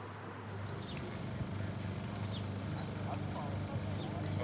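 Outdoor background: a steady low hum that grows a little louder about a second in, with a few faint, short high chirps.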